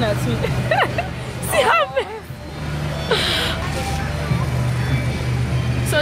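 Voices talking over background music with a steady low bass line, and a short hiss about three seconds in.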